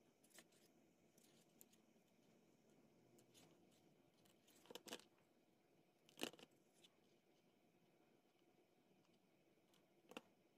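A few faint, short clicks and snips of small jewellery pliers and wire cutters working the end of a twisted copper wire. There is a pair just before the middle and the sharpest one a little past it, over near silence.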